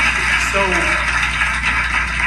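A late-night TV interview clip played over a room's loudspeakers: a man's voice starts a sentence over a steady wash of background noise.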